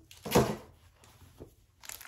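A short knock of handling noise about half a second in, as a bagged wax melt is put down and the next picked up, then a faint click; otherwise quiet.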